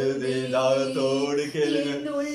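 A man and a woman singing a slow Tamil Christian worship song together, drawing out long held notes that slide between pitches.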